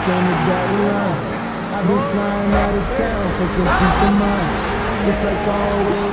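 A man's voice speaking over the steady noise of a large stadium crowd, with some music underneath.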